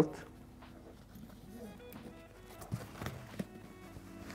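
A crampon's webbing strap handled and pulled through its metal buckle, with a few small clicks and knocks about three seconds in, over quiet background music.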